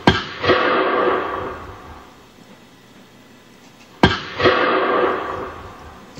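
Two gunshots about four seconds apart. Each sharp crack is followed by a distinct echo about half a second later and a reverberating tail that dies away over roughly two seconds.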